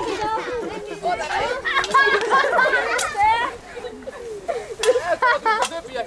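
Several people chattering at once, some voices high-pitched, with a few sharp clicks about halfway and near the end.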